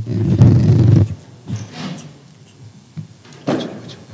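A door being worked open and shut: a loud rumbling clatter for about the first second, a few softer knocks, then a sharp thud near the end.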